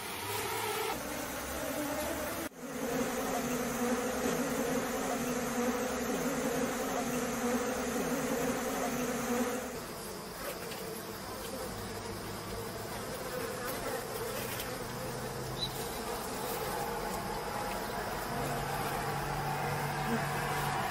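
A wild honey bee colony buzzing, a dense steady hum with a brief drop about two and a half seconds in. From about ten seconds the hum thins and gets a little quieter.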